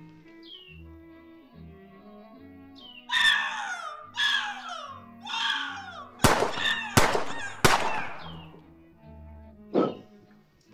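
Bird-of-prey screech sound effect standing in for a bald eagle, three long cries each falling in pitch, followed by three sharp gunshot effects about 0.7 s apart, over steady background music.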